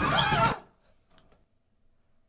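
A voice finishing a spoken word during the first half second, then near silence.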